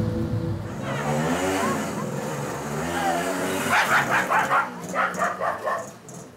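Music with a gliding melodic line in the first half, then a dog barking in a quick run of short barks, several a second.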